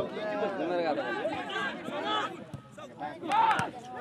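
Several voices talking and calling out at once, indistinct and at a distance, with one louder call a little over three seconds in.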